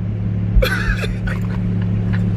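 Steady low hum inside a car, with a short burst of higher, wavering sound about half a second in.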